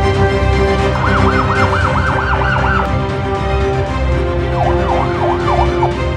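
A police siren in fast rising-and-falling yelps, in two bursts: one about a second in that lasts nearly two seconds, and a shorter, lower one near the end. Background music with held notes plays under it.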